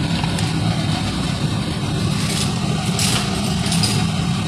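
A steady low hum runs under a light sizzle of chopped onion and dried herbs frying in butter in a kadai. A couple of faint brief ticks come near the end.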